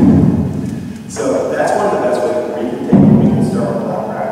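A man speaking, with two sudden loud low thuds: one right at the start and one about three seconds in.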